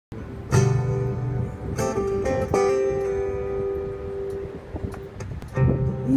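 Acoustic guitar opening the song: a few strummed chords in the first three seconds, each left to ring out, then another chord near the end.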